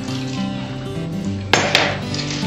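Background music, and about one and a half seconds in a short clink of glass kitchenware, as the glass measuring cup knocks against the glass bowl or counter.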